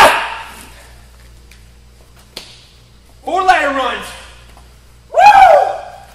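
A man letting out three loud wordless shouts while working out, one at the start, one about three seconds in and one about five seconds in, with a short click between the first two.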